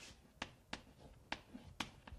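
Chalk writing on a blackboard: about five sharp, faint clicks at uneven intervals as the chalk strikes the board.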